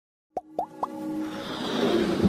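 Three quick plop sound effects, each a short blip gliding upward in pitch, followed by a rising swell of music as an animated logo intro jingle begins.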